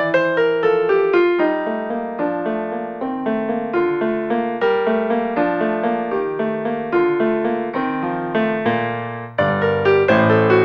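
Piano sound played on a keyboard: a flowing melody of quick notes over lower chords. The playing thins briefly just before a louder, fuller run of notes starts near the end.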